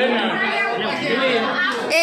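Several people talking over one another: the mixed chatter of a small crowd.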